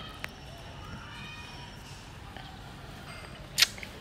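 Quiet steady background ambience with two short clicks, a faint one just after the start and a sharper, louder one near the end.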